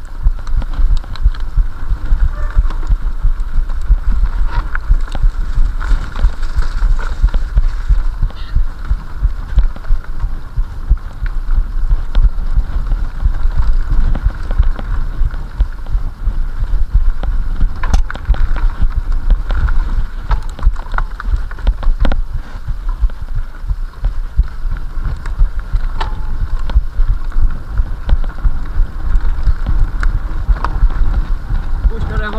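Mountain bike rolling fast over a bumpy dirt forest trail, heard through an action camera riding on the bike or rider: a constant low rumble and buffeting from the ride and wind on the microphone, with scattered rattles and knocks from the bike over bumps.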